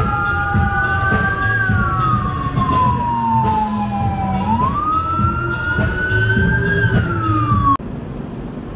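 Fire engine siren wailing, its pitch rising slowly and then falling away twice, with several tones sounding at once over a low rumble of traffic. It cuts off suddenly near the end.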